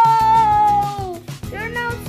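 A long, high-pitched cry held on one note for about a second, then sliding down in pitch, followed near the end by a shorter rising cry, over background music with a steady beat.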